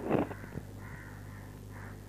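A newborn baby gives one short, loud cry at the start, then fusses faintly, over a steady low electrical hum.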